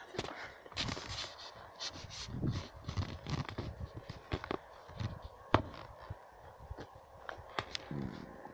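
Footsteps and rustling through grass and brush, with irregular crackles and handling knocks on a hand-held phone's microphone; the sharpest knock comes about five and a half seconds in.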